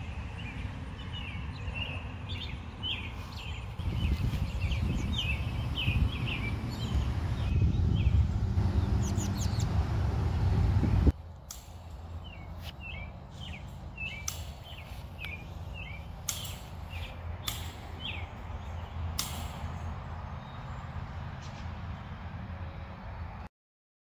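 Birds chirping outdoors in short, repeated calls. A low rumble runs under them for the first half and stops abruptly about halfway through. After that come a few sharp clicks.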